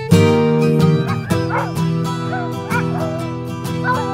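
Sled dogs whining and yipping, several wavering cries rising and falling from about a second in, over strummed acoustic guitar music.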